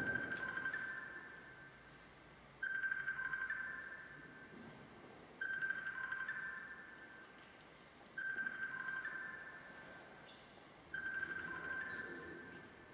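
Clavichord playing a soft, repeated figure: the same group of a few high notes is struck about every three seconds, each group fading away before the next begins.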